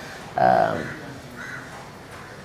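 A bird calling: one short harsh call that starts suddenly about half a second in, then a fainter call about a second later.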